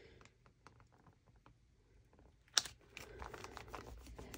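Faint crinkling and small clicks of a flexible clear spiderweb stamp being handled and pressed down onto a paper journal page, with one sharper crackle about two and a half seconds in.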